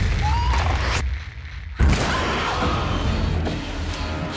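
Trailer music and sound design: a loud rush of noise over a low drone cuts out about a second in. A heavy boom hits just under two seconds in, and a low rumbling drone follows.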